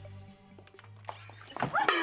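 Low, sombre music drone fading away. Near the end, a sudden loud cry from a woman that falls sharply in pitch.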